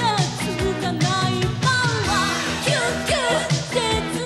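A woman singing an upbeat pop song live into a handheld microphone, backed by a band: keyboards holding chords and drums keeping a steady beat about twice a second.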